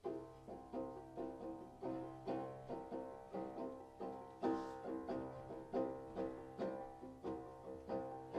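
Seven-string banjo played solo, starting up: single plucked notes at an even pace of about three a second, each one ringing out and fading before the next.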